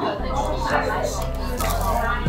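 Voices talking, with music playing underneath.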